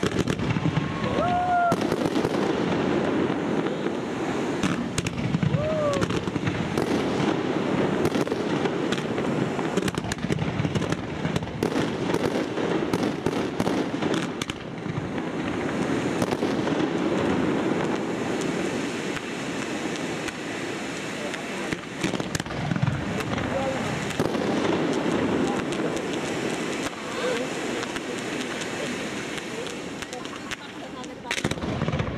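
A fireworks display going off: a continuous dense hiss and crackle with many sharp cracks and bangs, packed most closely about ten to fifteen seconds in.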